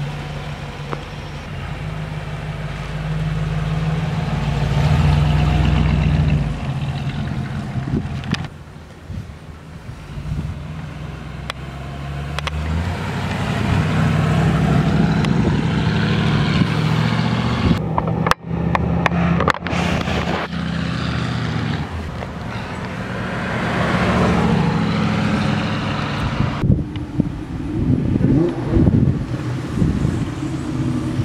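1957 Chevrolet Bel Air's 283 cubic-inch V8 running through its dual exhaust as the car pulls away and drives past, over several spliced shots. The engine note rises and falls with the throttle, and drops out briefly at the cuts.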